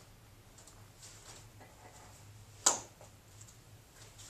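Quiet rustling of a taekwondo uniform and bare feet moving on foam mats as a child performs a form, with one sharp snap about two and a half seconds in.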